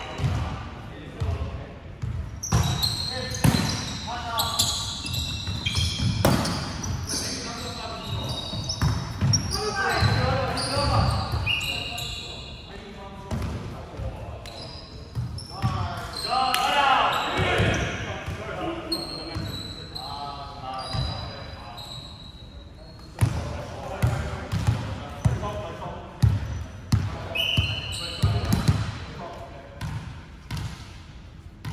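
Indoor volleyball play on a hardwood court: the ball being hit and thudding on the floor many times, short high sneaker squeaks, and players' voices calling out, all echoing in a large hall.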